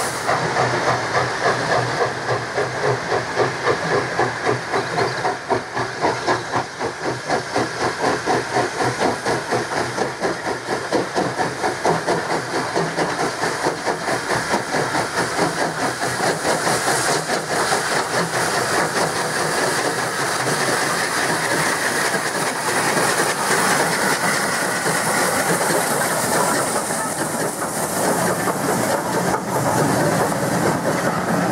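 Two steam locomotives, an LNWR Coal Tank and an LNWR Super D, double-heading a passenger train past at work. Their exhaust chuffs out loud, regular beats, about two a second, over a hiss of steam. In the second half this gives way to the steadier rumble and clatter of the carriages rolling by.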